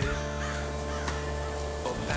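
A great blue heron calling, over background music with held chords.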